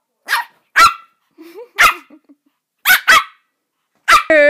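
A Pomeranian barking: five short, sharp, high-pitched barks, the last two in quick succession.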